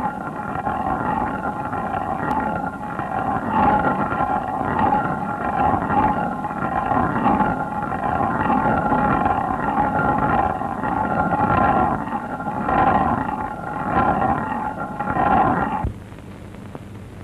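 Stone hand mill (chakki) grinding, a coarse rumbling grind whose loudness swells and dips about once a second as the upper stone is turned. It cuts off suddenly at the end.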